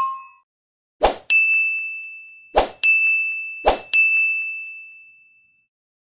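Animated subscribe-button sound effects: three sharp clicks, each followed by a bright bell-like ding that rings and fades over a second or two. The tail of an earlier chime dies away at the start.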